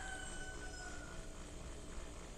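Pool pump running with a steady hum, really loud, loud enough that its owner wants it looked at to find out why. A faint high steady whine sounds over it and fades out a little over a second in.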